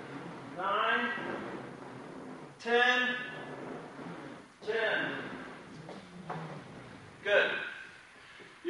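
A man's voice speaking four short words, about two seconds apart, counting off the repetitions of an exercise.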